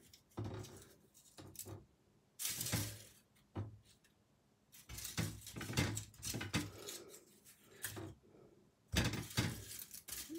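Dried rose buds and petals being picked up and dropped into a metal candle mold: scattered crisp rustles and crackles, with small clicks of fingers and petals against the metal, in short clusters separated by brief silences.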